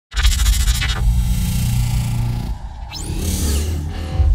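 Intro logo sting made of sound effects: a scratchy, crackling burst over a deep low rumble that cuts off about two and a half seconds in, then a rising whoosh.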